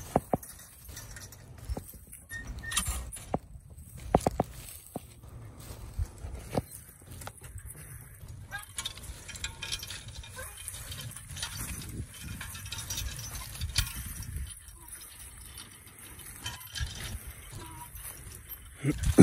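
A team of two mules pulling a plow: the metal harness and trace chains clink and jingle irregularly, with scattered knocks and hoof steps on soft ground.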